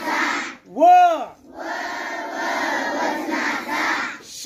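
A large group of schoolchildren chanting Marathi letter syllables in unison. The chant breaks off about half a second in for one loud call that rises and falls in pitch, then the group chants on.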